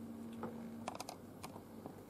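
A few faint, irregular light clicks and taps over a low steady hum that stops about a second in.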